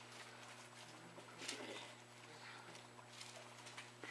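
Near silence: room tone with a steady low hum, broken by a few faint rustles and clicks of Bible pages being turned, the loudest about a second and a half in.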